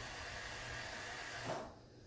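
Faint, steady hiss of background noise that drops away suddenly about one and a half seconds in.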